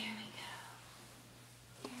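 A woman speaking quietly, "there we go", at the start and again at the very end; between, only faint room tone with a steady low hum and a small click just before the second phrase.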